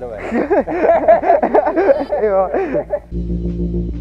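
A voice, loud and wavering, for about three seconds, then background music of steady held tones with a deep low end starts suddenly just after three seconds in.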